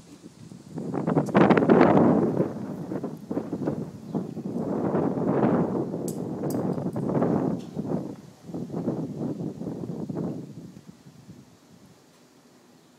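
Wind buffeting the microphone in three swelling gusts, the loudest about a second in, dying away shortly before the end.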